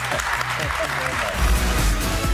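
Studio audience laughing and applauding over a music bed, then outro music with a deep bass beat comes in about one and a half seconds in.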